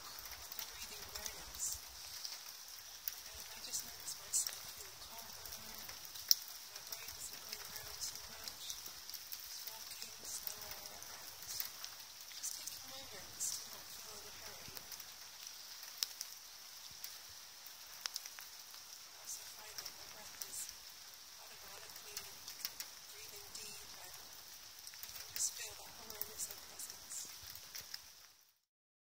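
A woman breathing slowly and softly in and out during a belly-breathing exercise, the breaths coming every few seconds. Over it runs a steady faint hiss with scattered light crackling clicks.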